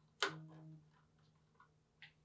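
One sharp click about a quarter second in, as a Wyze Cam V2's magnetic base snaps against a metal electrical box, followed by a brief low hum and a few faint ticks.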